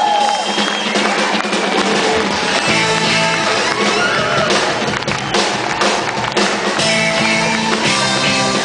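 Live smooth jazz band playing: saxophone lines with bending, gliding pitches over acoustic guitar, electric bass and a drum kit, with drum hits coming in more strongly about five seconds in.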